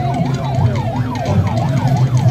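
Electronic vehicle siren yelping, its pitch sweeping rapidly up and down about three times a second, over a steady low drone.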